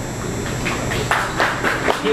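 Audience clapping in a hall: scattered hand claps begin about half a second in and grow more frequent, applause at the close of a talk.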